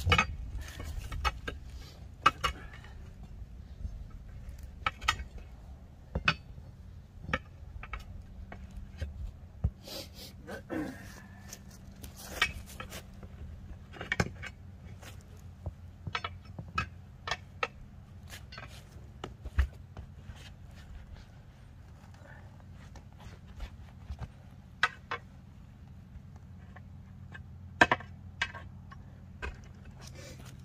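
Steel tire irons clanking and scraping against a steel tractor wheel rim while a tire bead is pried off by hand: irregular sharp metallic knocks, a few every couple of seconds, the loudest near the start and shortly before the end.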